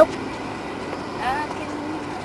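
Steady background noise inside a car's cabin, with a short spoken sound about a second and a quarter in.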